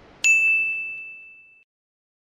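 A single bright ding from a logo-animation sound effect: one clear, high tone that strikes sharply and fades away over about a second and a half.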